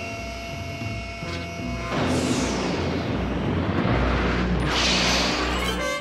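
Cartoon rocket-booster sound effect: a loud rushing whoosh starts about two seconds in, sweeping down from a high hiss and building as the robot lifts off. It plays over background music with held notes.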